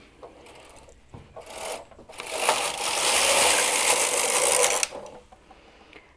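Singer knitting machine carriage pushed across the needle bed to knit a row, its needles running through the cams in a steady mechanical rasp for about three seconds. A few light clicks come before it.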